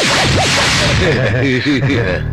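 Comic film sound effect: a sudden whoosh at the start with a tone swinging rapidly up and down in pitch, followed by a string of smaller wavering tones.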